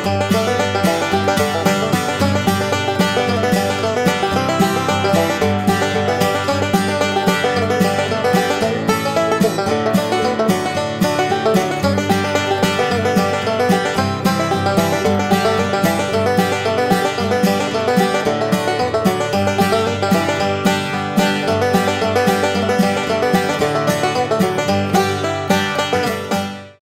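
Background music: a lively tune of quick plucked-string notes in a country style, running steadily.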